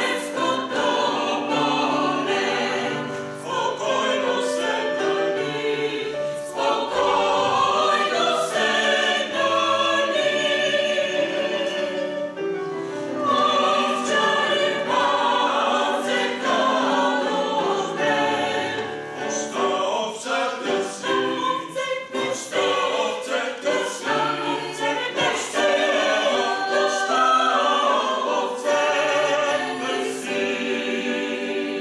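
Mixed choir of men's and women's voices singing a hymn in several parts, accompanied by a keyboard.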